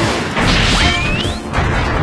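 Film sound effects of a jet aircraft passing with a whoosh, then a rising electronic whine like a beam weapon firing, over dramatic background music.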